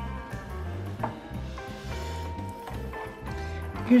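Background music with sustained tones over a repeating low bass pattern.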